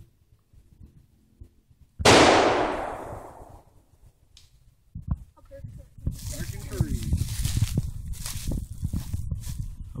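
.303 British rifle firing a single shot about two seconds in, a sharp report whose echo dies away over about a second and a half. Irregular rustling and handling noise follows in the second half.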